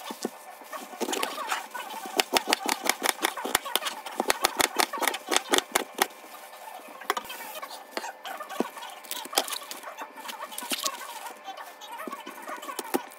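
Chef's knife chopping cabbage on a cutting board. A quick run of sharp knocks, about five a second, goes from about two to six seconds in, then scattered single cuts follow.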